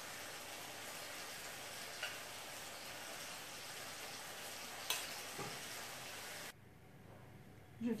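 Steady hiss with a few soft taps and scrapes of a metal spoon spreading minced-meat filling along flattened dough. The hiss cuts off abruptly near the end.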